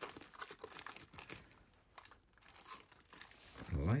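Plastic packaging film crinkling and rustling irregularly as the RC truck and its body are handled, with a few small clicks.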